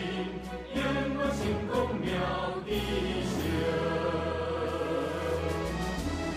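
Choral music: a choir singing held notes over a low bass line that moves every second or so.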